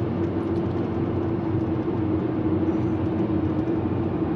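Car cruising at highway speed, heard from inside the cabin: steady road and engine noise with a constant low hum.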